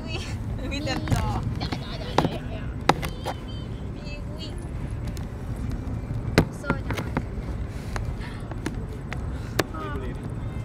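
Steady low rumble inside a moving car, with young girls' voices murmuring and giggling now and then. A few sharp knocks come through, the loudest about two, three and six and a half seconds in.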